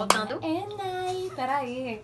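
A single hand clap at the very start, then a woman's voice vocalising a short wordless, sing-song phrase whose pitch steps up and down and drops near the end.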